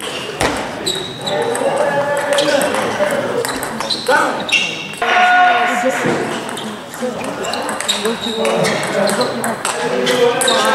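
Table tennis rally: the ball clicks off the bats and the table in quick back-and-forth strikes. Voices carry through the sports hall underneath.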